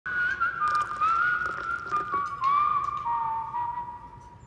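A whistled tune: a single wavering melody that glides and steps between notes, settling on a lower held note near the end, with light clinks of dishes beneath it.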